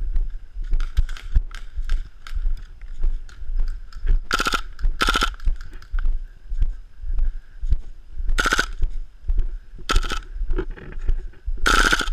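Short full-auto bursts from KWA MP7 gas-blowback airsoft guns, each a rapid clatter under half a second: two in quick succession about four to five seconds in, then three more over the last four seconds. Walking footsteps thud softly about twice a second underneath.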